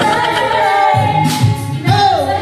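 A woman singing karaoke into a microphone over backing music, holding long sustained notes.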